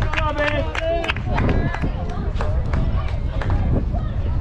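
Voices of players and spectators calling out across a baseball field, none of it clear speech, over a steady low rumble.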